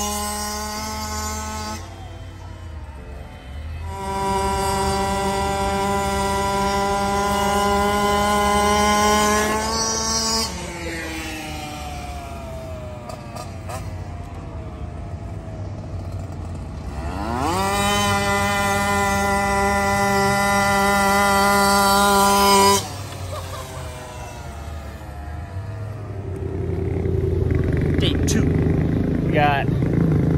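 Electric motor of an RC car whining at full throttle in long steady runs: the pitch falls away as it slows about ten seconds in, then sweeps up sharply as it speeds off again, holds, and cuts off suddenly a few seconds later.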